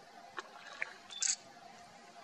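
Faint handling noise: a few small clicks and a short hissy tick over low, steady background hiss.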